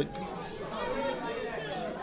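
Audience chatter in a large hall: several indistinct voices talking at once, quieter than the commentary around it.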